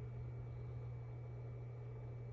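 Quiet room tone with a steady low hum; the small turns of the lens adjuster make no distinct sound.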